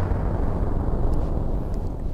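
Drum kit ringing out after a final run of hits: a low rumbling wash that slowly dies away, played back over the hall's speakers.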